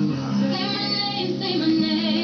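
A young man's voice singing a pop/R&B melody, holding long, steady notes.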